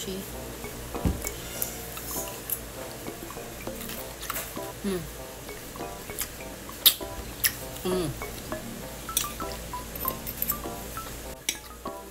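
Metal fork and spoon clinking and scraping against a ceramic plate in scattered sharp taps, the loudest about seven seconds in. Two short 'mmm' hums of enjoyment, with background music underneath.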